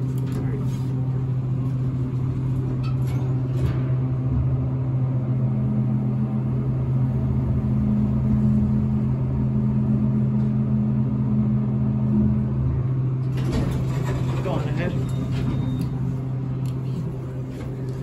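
Otis traction elevator car riding down: a steady low hum, with the hoist machine's tone coming in about five seconds in and dropping away around twelve seconds as the car stops. Brighter clattering door noise follows from about thirteen seconds.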